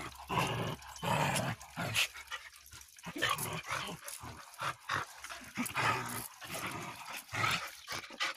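Dogs making short, irregular vocal sounds while they jostle and mouth at one another in rough play.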